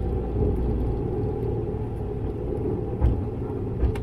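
Sailplane's main wheel rolling out on a wet asphalt runway, heard inside the cockpit: a steady rumble that eases about a second in, with a couple of short bumps near the end.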